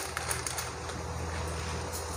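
Whole cumin seeds sizzling in hot oil in a kadhai: a steady, faint hiss with a few small crackles, over a low steady hum.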